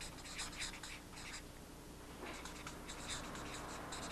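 Felt-tip marker scratching across flip-chart paper in quick short strokes as a name is written, with a brief pause about halfway through.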